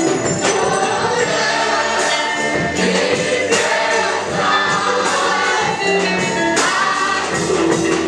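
Loud gospel worship music: a lead singer and a choir or congregation singing over a band with steady percussion, played through loudspeakers.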